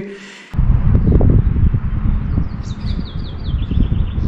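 Wind rumbling on the microphone outdoors, starting abruptly about half a second in. Near the end a small songbird sings a quick run of short, high, falling notes.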